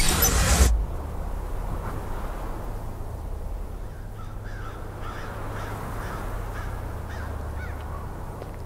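A wave crashing on rocks in a loud splash lasting under a second, followed by a steady low wind rumble. From about halfway through, a series of short, harsh bird calls repeats every half second or so.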